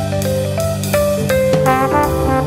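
Instrumental lounge jazz: a melody of short notes moving over bass and drums.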